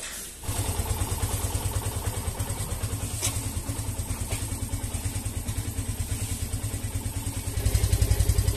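Motorcycle engine idling steadily with a fast, even pulsing beat, starting about half a second in and getting louder near the end.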